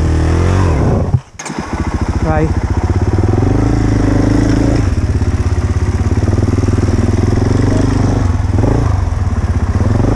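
Enduro motorcycle engine running at a low, steady idle with an even, rapid firing pulse. The sound drops out briefly about a second in, then the engine comes back at the same pace.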